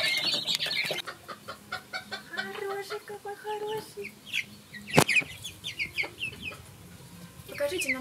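Chicks peeping densely for about a second, then adult hens clucking and calling, one call drawn out on a steady pitch. A single sharp knock comes about five seconds in.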